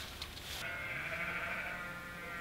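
A sheep bleating in one long call that starts a moment in and holds steady for over two seconds, with the flock being fed.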